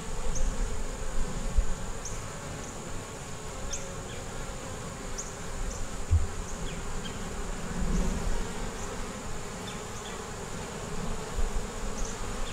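Honey bees buzzing around an open nuc hive, a steady hum with no break.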